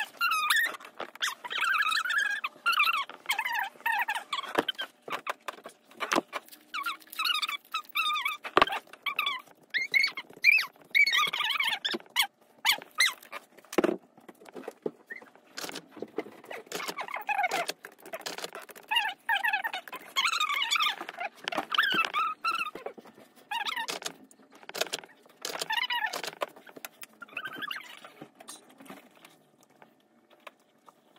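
Adhesive tape pulled off a dispenser roll in repeated squeaky strips, broken by sharp clicks as it is torn off, while paper sheets are pressed down and shifted on fabric.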